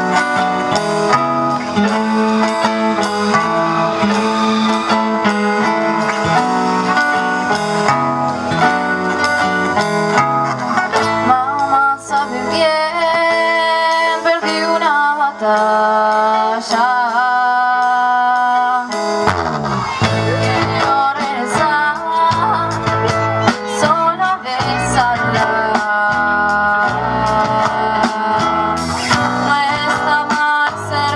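A live rock band playing guitars, drums and keyboard with a sung melody. About twelve seconds in the bass and drums drop out, leaving a lighter passage with a wavering melody over guitar, and the full band comes back in a few seconds later.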